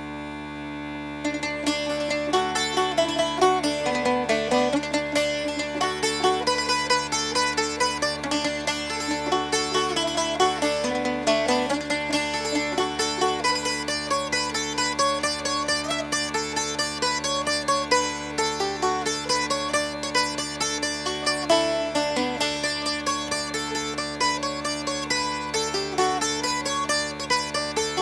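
Bagpipes playing a lively traditional tune over steady drones. The chanter's melody, full of quick grace notes, comes in over the drones about a second in.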